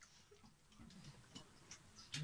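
Near silence with a few faint, irregular small clicks of people eating: mouth sounds while chewing momos.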